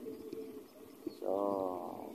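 Speech only: a man's voice saying a drawn-out "So" a little over a second in, with faint background before it.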